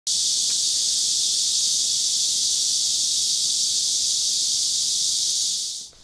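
A dense chorus of cicadas: one steady, high-pitched buzz that fades out just before the end.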